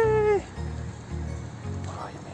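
A person's short, high startled cry of "ay!", held briefly and dropping in pitch as it ends, over background music with a steady beat of about two pulses a second.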